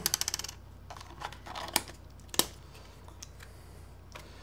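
Small clicks from handling a Canon EOS Ra mirrorless camera: a quick rattle of clicks, then a few separate sharp clicks about 1.7 and 2.4 seconds in, as its battery goes back in and the compartment is shut.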